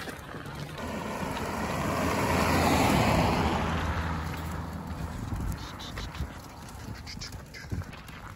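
A motor vehicle passing by: its engine hum and road noise swell to a peak about three seconds in, then fade away.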